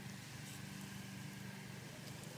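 Garden hose spray nozzle running, a faint steady hiss of spraying water, with a low steady hum underneath.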